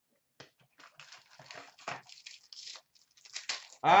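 Crinkling and rustling of a trading-card pack's wrapper as it is handled and opened by hand, in irregular bursts. A man's voice starts at the very end.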